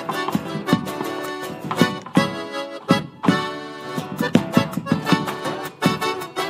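Malambo music with held melodic notes under a rapid run of sharp strikes: the zapateo footwork of a dancer's boots stamping and tapping on a stage floor. The strikes break off briefly about three seconds in.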